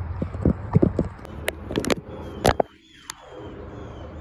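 Handling noise from a phone: a quick run of sharp clicks and knocks from fingers on the handset close to its microphone, with a brief drop-out near the end of the run, over a steady low background rumble.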